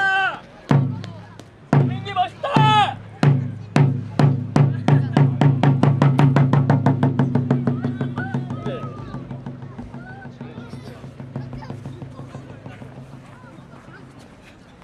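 Traditional Korean drum struck in single beats that speed up into a fast roll about six seconds in, then die away, with shouts at the start and about two and a half seconds in.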